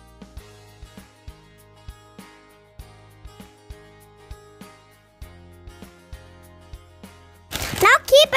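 Background music: light, pitched instrumental notes over a soft tick about twice a second. Near the end a child's voice cuts in loudly over it.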